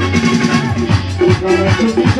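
Loud live band music with a fast, steady percussion beat under sustained instrument notes.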